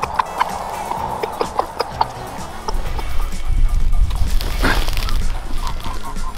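Background music, with wind rumbling on the microphone from about halfway through.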